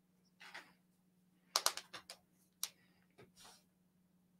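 Faint, light clicking at a computer: a quick run of clicks about one and a half seconds in and one more click a little later, over a low steady hum.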